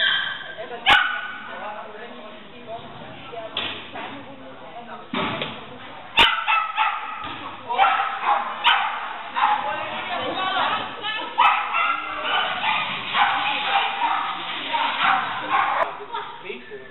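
A dog barking and yipping in quick, high-pitched bursts, sparse at first and then nearly nonstop from about five seconds in.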